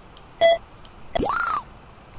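Electronic beeps from the measuring software. A short beep sounds as a probe point is taken on the part's corner. About three-quarters of a second later a longer tone sweeps up and falls back as the three-point arc measurement completes.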